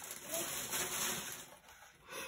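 Hands handling a rolled diamond painting canvas: a soft rustling and rubbing that fades out near the end.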